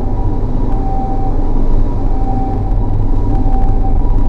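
Steady road and engine rumble heard from inside a moving car, with a Japanese ambulance's two-tone siren close behind, alternating between a high and a low note about every two-thirds of a second. The rumble is the loudest sound.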